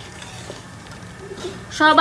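Wooden spoon stirring a simmering mixture of oil, vinegar and spices in a large aluminium pot, with a faint sizzle, as the pickle masala is cooked down uncovered. A woman's voice begins near the end.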